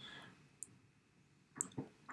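Near silence, broken by a faint single click just over half a second in and two quick soft clicks near the end.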